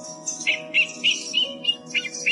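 Young owl giving a rapid series of short, high chirping calls, starting about half a second in, over steady background music.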